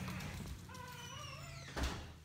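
Front door hinges creaking faintly in a drawn-out, wavering squeak as the door swings, then a single knock near the end as it shuts.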